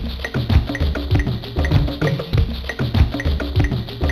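A percussive audio sample playing back through a sampler, a busy drum and percussion pattern with a steady beat of about two low hits a second and sharp clicking hits between them.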